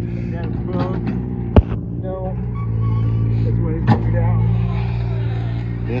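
A steady engine-like hum runs throughout and swells slightly about halfway. A single sharp knock comes about a second and a half in, and a smaller one shortly before four seconds.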